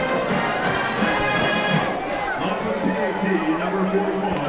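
Band music with held notes, carried on the stadium broadcast. About halfway through, an indistinct voice comes in over it.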